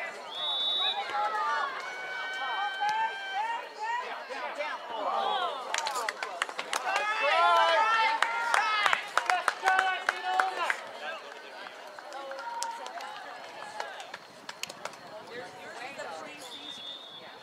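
A short, high whistle blast near the start, then scattered shouting from spectators and players. The shouting swells into cheering with claps and sharp knocks in the middle.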